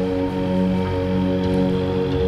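Devotional background music between lines of the chant: a steady sustained drone of held tones, with no voice.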